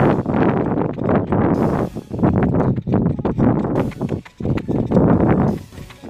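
A runner's footsteps on a dirt track in a steady rhythm, with loud breathing and rubbing close to the handheld phone's microphone.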